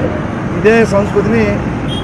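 A person speaking in a language the recogniser did not transcribe, over a steady low background rumble.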